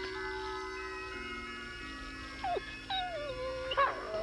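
Soft sustained music chords, with a cartoon dog whining in a few falling whimpers from about halfway through.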